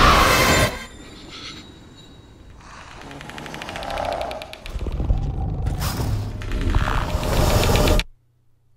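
Horror film trailer soundtrack. It opens with a loud, sudden burst of sound effects, then goes quieter while a rapid ticking texture builds. A low rumbling swell with music rises through the second half and cuts off abruptly at the end.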